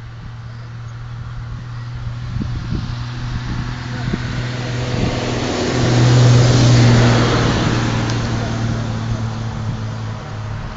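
A motor vehicle passing by, its engine and road noise building to a peak about six to seven seconds in and then fading, over a steady low hum.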